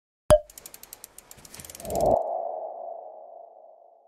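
Channel-logo sting sound effects: a sharp hit just after the start, a quick run of ticks, then a swell about halfway through into a single held tone that slowly fades away.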